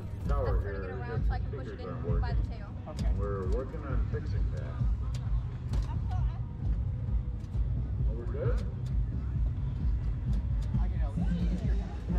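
Snatches of people talking close by, over a steady low rumble, with scattered light clicks and knocks as the ultralight's airframe is pushed by hand across grass.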